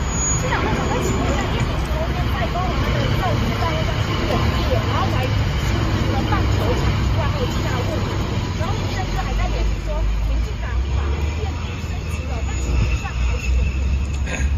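Murmur of several people's voices, no one speaking clearly, over a steady low outdoor rumble like street traffic.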